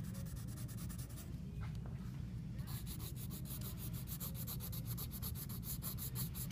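Graphite pencil scratching on sketchbook paper in rapid, evenly spaced back-and-forth strokes, pressed hard to lay down heavy dark lines. The strokes pause for about a second shortly after the start, then carry on.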